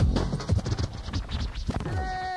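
Drum and bass track with a DJ scratching a record on a turntable. The heavy bass fades out a fraction of a second in, and quick back-and-forth scratch strokes take over.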